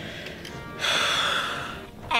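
A person's breath: one loud breathy rush of air, a gasp or hard exhale lasting about a second, starting a little under a second in, over faint steady background music.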